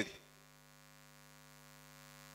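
Faint, steady electrical mains hum: a low buzz with a ladder of evenly spaced overtones, growing slightly louder near the end.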